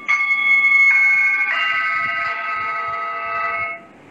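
Sustained musical tones: a held note joined by further notes about one and one and a half seconds in, building a chord that stops abruptly near the end.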